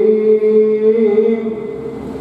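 A man chanting Sikh scripture (Gurbani) into a microphone, holding a long, steady note that trails off near the end.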